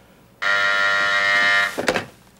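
Desk telephone intercom buzzer giving one steady buzz of just over a second, a call from the outer office, followed by a short click.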